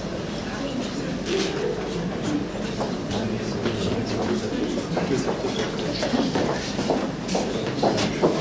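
Indistinct murmur of several people talking quietly in a room, with scattered small clicks and shuffling.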